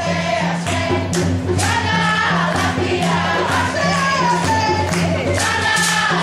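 A group of voices singing together over a repeating drum beat, with shakers rattling in time.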